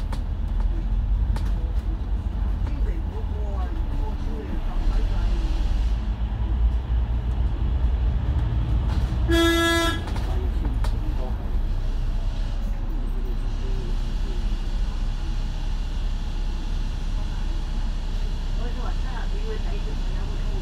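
Steady low engine and road rumble of a double-decker bus heard from its upper deck, with one short vehicle-horn toot about halfway through.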